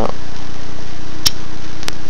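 Steady loud hiss with a low electrical hum, and two short sharp clicks a little over a second in and near the end.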